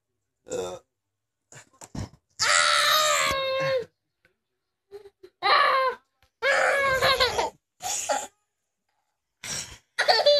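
High-pitched, strained vocal cries and squeals during rough play-wrestling: three drawn-out cries of about a second each, with short grunts and breaths between.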